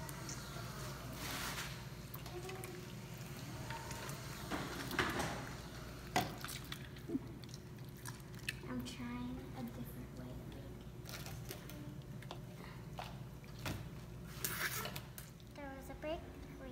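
Homemade slime being pulled and worked by hand, with scattered light clicks and knocks of plastic cups and a stirring spoon, and faint children's voices in the background.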